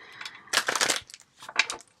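Work noise from a handyman in the house: a half-second burst of scraping, crunching noise about half a second in, then a shorter one later.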